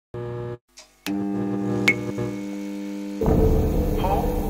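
Electrical buzz of a neon sign coming on: a short burst of hum, a brief gap, a couple of sharp clicks, then a steady buzzing hum with a sharp ping about two seconds in. About three seconds in, a louder, noisier low sound takes over.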